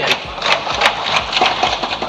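A dense, rapid clatter of many irregular knocks over a general hubbub: assembly members thumping their desks in a large legislative chamber.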